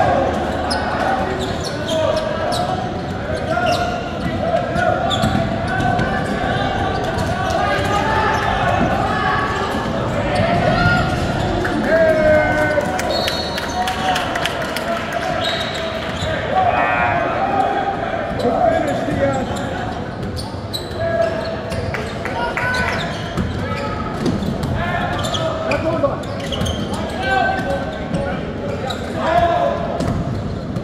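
A basketball game in a gym: the ball is dribbled on the court with repeated sharp bounces, under indistinct shouting from players and spectators, all echoing in the large hall.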